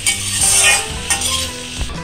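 Spiny gourd pieces stirred in a metal kadai with a perforated metal spoon: scraping and clinking over a steady sizzle of frying. The vegetable has just been uncovered, cooked to golden, with no water added.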